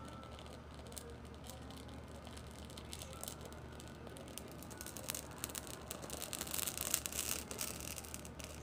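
A dry bay leaf burning fast, with a fine crackle that builds from about three seconds in and is densest near the end.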